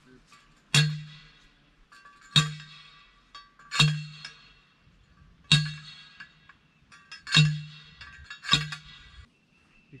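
Steel T-post being driven into the ground: six metallic clanging strikes about a second and a half apart, each with a dull thud and a brief ringing tail.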